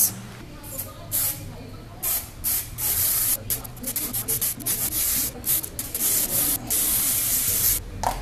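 Aerosol can of spray adhesive hissing in a string of bursts, short at first and then longer, the last lasting about a second.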